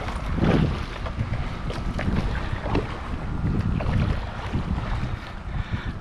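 Wind rumbling on the microphone, with water splashing and lapping against the nose of a stand-up paddleboard.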